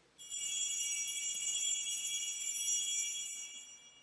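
Altar bells ringing at the elevation of the chalice after the consecration, marking the elevation. A high, clear ringing starts just after the beginning, holds steady and fades out near the end.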